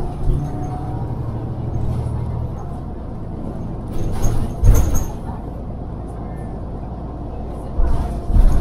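City transit bus heard from inside while moving: a steady low engine drone with road noise, and a couple of loud knocks and rattles about four and a half seconds in.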